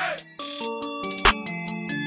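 Instrumental drill-style hip-hop beat: a bell-like synth melody over quick hi-hat ticks. It has a short falling sweep and dropout at the very start, and a heavy kick-and-bass hit about a second in.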